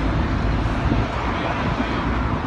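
Steady city street noise from passing traffic on a busy road, with wind rumbling on the microphone.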